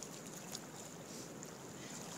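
Faint, steady sound of lake water moving around someone standing waist-deep, with a light click about half a second in.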